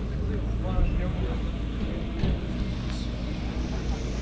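Parked cars' engines idling steadily, a deep low sound that runs throughout, with people talking over it.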